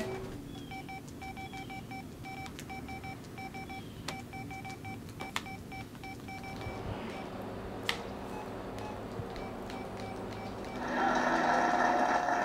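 Short electronic beeps at one steady pitch, repeating in quick runs like mobile phone key tones as buttons are pressed, with a few light clicks. Near the end a television starts playing with a voice.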